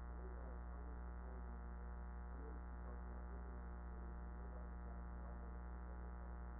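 Steady electrical mains hum with a stack of higher overtones, carried at a low level on the lecture-hall microphone recording.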